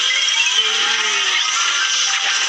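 Cartoon magic sound effect: a bright, steady shimmering hiss with a few slow sliding tones, over background music.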